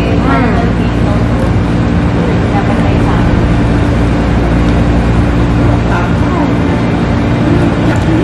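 Steady low machine hum with an unchanging drone, plus a few faint voices in the background.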